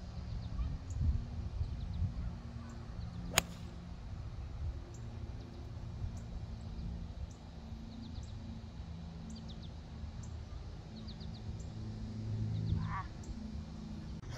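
Golf iron striking a ball off the tee: one sharp click about three and a half seconds in, a shot the golfer calls not the worst strike but not the best. Faint bird chirps over a steady low outdoor rumble.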